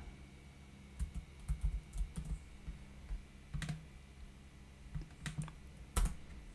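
Computer keyboard keys being typed, scattered single keystrokes at irregular intervals, over a faint steady low hum.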